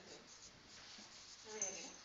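Faint scratching of a marker pen writing on a whiteboard.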